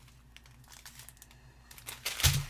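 Faint crinkling of small plastic zip bags of diamond painting drills being handled, with a few light rustles.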